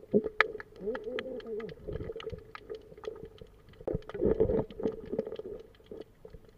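Muffled underwater sound from a submerged camera: a wavering, voice-like hum that swells about four seconds in, over many scattered sharp clicks.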